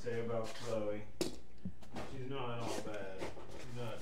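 A person's voice talking, the words not made out, with one sharp click about a second in.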